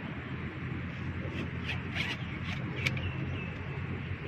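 A few short, high bird chirps about a second to three seconds in, and a brief thin whistle just after, over a steady low outdoor rumble.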